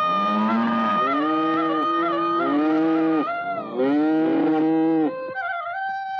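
A herd of cattle lowing: several long, arching moos that overlap one another. A bamboo flute holds a steady ornamented note behind them for the first three seconds, and soft flute music takes over near the end.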